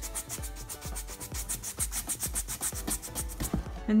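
A paintbrush dry-brushing back and forth across painted EVA foam, a quick rhythmic scratching of about six strokes a second that stops shortly before the end.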